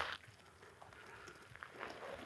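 Faint scraping and rustling of a ghillie-suited body and gear dragging over packed dirt in a slow low crawl, with a soft scrape at the start and another small one near the end.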